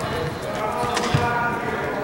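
Background voices in a large, echoing gym hall, with a couple of dull thuds on the floor, the clearest about a second in.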